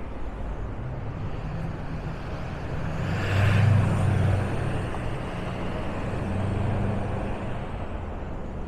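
City street traffic: a motor vehicle's engine passes close by, loudest about three and a half to four seconds in, with a short hiss at its peak, then a second, smaller swell of engine noise near the end.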